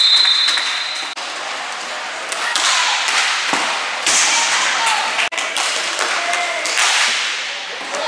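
Referee's whistle blowing one steady high note that stops about a second in, as play halts at the goal. Then inline hockey play resumes: sharp cracks of sticks and ball against each other and the boards over the steady noise of skates on the rink floor.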